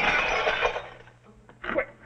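Window glass shattering and falling in clinking pieces. The loud crash dies away over about a second, the sound of a rifle bullet breaking a cabin window pane.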